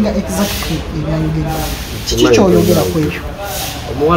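Speech only: a person talking in conversation, words the recogniser did not write down.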